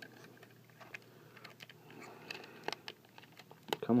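Scattered plastic clicks and light rubbing from a Transformers Masterpiece MP-19 Smokescreen figure as its parts are turned and flipped by hand during transformation.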